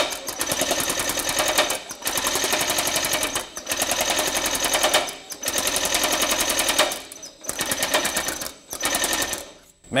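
Baileigh MH-19 power hammer pounding sheet metal between its dies in rapid, even strokes. It runs in bursts of one to two seconds with short breaks between them.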